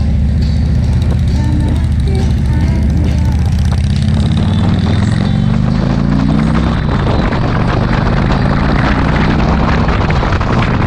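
Motorcycle engine under way, its pitch rising as it accelerates from about four to seven seconds in. After that, wind noise on the microphone at road speed takes over.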